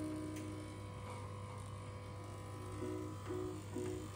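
Corded electric dog clippers running with a steady low hum, under background music with held melodic notes that thin out in the middle and pick up again near the end.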